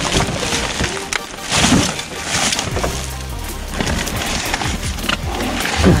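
Plastic bags and cardboard boxes of produce rustling and crinkling as they are pushed aside, loudest about a second and a half to two and a half seconds in, with music and a low steady bass playing underneath.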